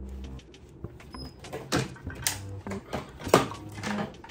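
Spring clamps being unclipped from an aluminum soft-plastic bait mold: a string of irregular plastic-and-metal clacks and knocks, the loudest a little over three seconds in.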